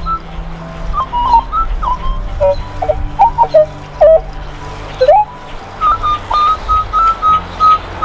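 Minelab E-Trac metal detector in all-metal mode giving short squeaks and chirps of varying pitch as the coil sweeps the ground, every squeak an iron target in iron-littered soil. In the second half it gives a quick run of beeps at one pitch, about three a second.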